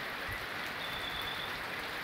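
Steady rain falling on foliage and ground, a continuous even hiss.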